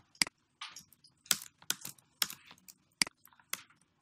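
Typing on a computer keyboard: about a dozen irregularly spaced keystrokes as lines of code are entered.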